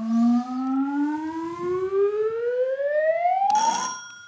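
Sound effect for an on-screen graphic: a siren-like tone gliding steadily upward in pitch for about three and a half seconds, ending near the end in a short crash that leaves a ringing chime.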